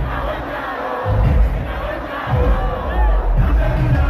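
Loud live concert sound: music with a heavy bass beat and a large crowd shouting and singing along. The bass comes in strongly about a second in.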